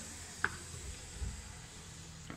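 Quiet room tone between spoken comments, with one short sharp click about half a second in and a soft low thump a little after a second.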